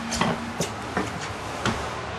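A few light, irregular clicks and knocks, about five in two seconds, over a faint steady hum that stops about half a second in.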